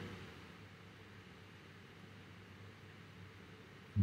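Faint steady hiss of room tone and microphone noise, with a weak low hum.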